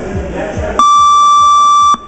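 Gym music with a steady beat, then, about a second in, a boxing round timer sounds one loud, steady electronic beep lasting just over a second that cuts off sharply, marking the end of the round.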